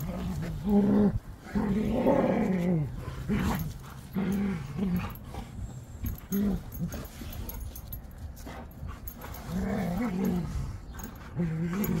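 Two Rottweilers play-wrestling in the dirt, making a series of short, low play growls at irregular intervals.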